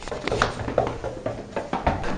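Irregular knocks, scuffs and handling noise from a handheld camera jostled about as the person carrying it nearly falls.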